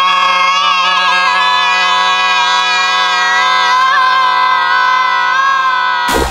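A man, a woman and a boy holding one long, loud, open-mouthed 'aaah' together on a steady pitch, which is cut off abruptly at the end.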